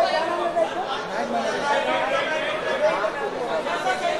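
Many voices talking and calling out over one another, a crowd's chatter with no single speaker standing out.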